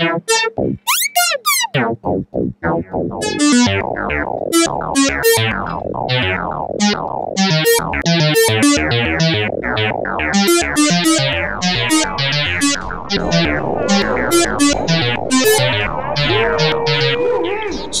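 Modular synthesizer voice run through a wave folder, its level driven by a CV envelope, playing a rhythmic run of short, bright, plucky notes that each dull quickly as the folding falls away. It starts as sparse blips and becomes a dense, fast sequence about three seconds in, with a short held tone near the end.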